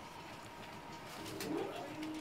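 Steady running noise heard from inside a moving passenger train hauled by the class 90 electric locomotive 90015, with a faint steady whine. About a second and a half in, a short rising sound and a few light clicks stand out over the running noise.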